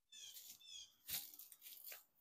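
Faint bird chirps: a quick run of short, falling high notes in the first second, then a sharp click about a second in.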